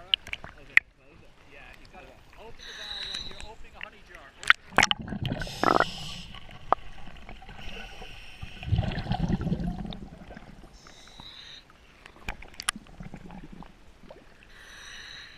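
Water sloshing and slapping around a camera housing at the surface, with sharp clicks of water striking the housing as it dips in and out. About nine seconds in there is a rushing gurgle of scuba exhaust bubbles underwater.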